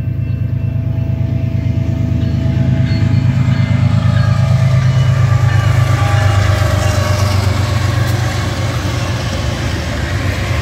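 BNSF diesel freight locomotives passing close by: a heavy low engine rumble that swells to its loudest about five seconds in, followed by the rolling noise of steel wheels on rail as double-stack intermodal container cars go by.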